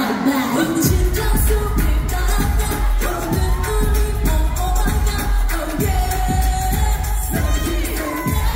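Live K-pop girl-group performance: the singers' voices over a pop backing track through the venue PA. A held sung note opens without bass, then a heavy bass beat comes in about a second in and runs on under the vocals.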